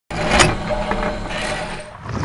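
Intro sound effect for animated news graphics: a noisy whoosh over a low rumble, with a sharp hit about half a second in, fading out near the end.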